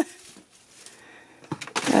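A few light clicks and knocks of a plastic storage drawer being handled, about a second and a half in, then the start of a short laugh.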